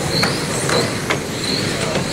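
Several 1/10-scale electric World GT touring cars with 10.5-turn brushless motors racing on a carpet track. Their motors make short, high, overlapping whines that rise and fall as the cars accelerate and brake, over a steady rush of noise, with a few sharp ticks.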